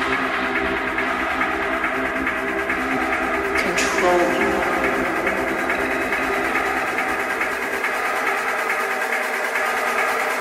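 Hard techno track in a DJ mix: dense, sustained synth layers over a deep low end. About four seconds in, a swept noise hit with a falling pitch cuts through. Near the end the deepest bass drops away.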